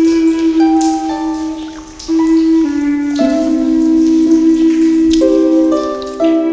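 Native American flute holding long, slow notes that step from pitch to pitch in a soothing instrumental, with water drip sounds in the background.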